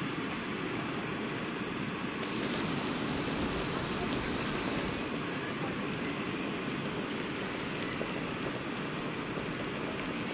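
Jetboil Flash gas canister stove burning at full flame, a steady even hiss as it heats a pot of water close to the boil.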